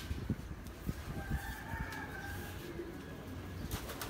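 A bird call, held for about a second near the middle, over low knocks and a steady low hum.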